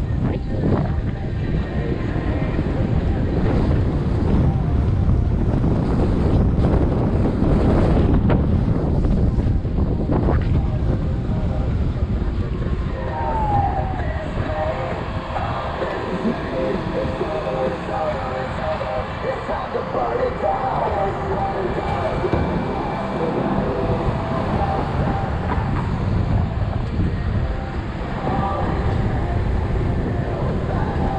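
Wind buffeting the microphone of a camera moving along a city street with a bicycle, with a low road rumble underneath. It is heaviest in the first ten seconds and eases after that. Faint wavering tones come and go in the middle stretch.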